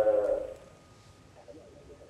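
The end of a man's drawn-out "ehh" over a telephone line, thin and cut off at the top, fading out within the first half second. The rest is low room tone.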